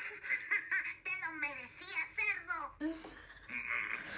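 Voices laughing and talking, with a short brighter burst of laughter near the end.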